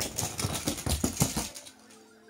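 Toy die-cast monster trucks clattering down an inflatable air mattress: a rapid run of small clicks and knocks that stops about a second and a half in.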